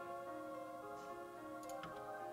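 Soft background music of held, sustained notes, with a couple of faint clicks near the end.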